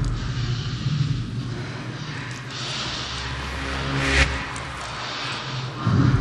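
Electronic bass music playing in a DJ mix: a low, stepping bassline under a rising noise sweep that builds to a hit about four seconds in, with the track getting louder again right at the end.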